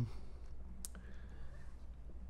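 Quiet room tone with a steady low hum and one short, sharp click just under a second in.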